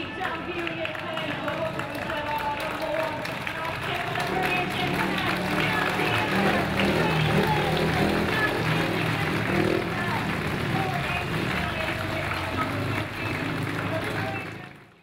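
Music with a singing voice, getting louder through the middle.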